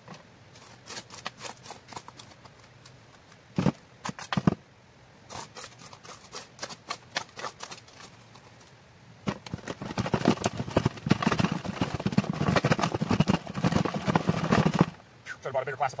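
Gravel and dirt clattering on a prospecting classifier's mesh screen over a plastic bucket: a few scattered knocks of rocks at first, then about six seconds of dense, rapid rattling and scraping from about nine seconds in as the material is worked through the screen.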